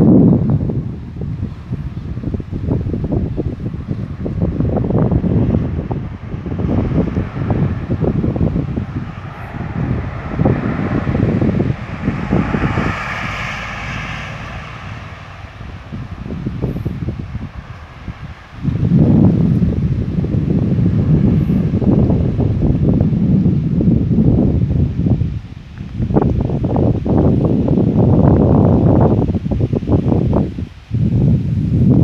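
Wind buffeting the phone's microphone in loud, uneven gusts of rumble. Around the middle the gusts ease for a few seconds while a higher, steadier hum swells and fades, then the buffeting returns.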